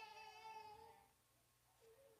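Faint, high-pitched drawn-out vocal call that fades out within the first second, followed by near silence and a second, shorter wavering call near the end.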